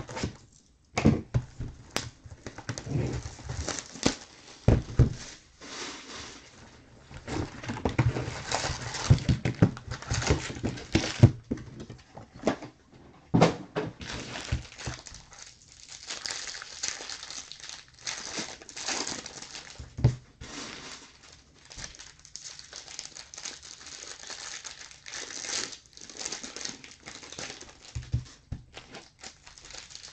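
Trading-card packs being taken from their cardboard box and handled: plastic pack wrappers crinkling and rustling in irregular bursts, with a few sharp knocks as packs and box are set down on the table.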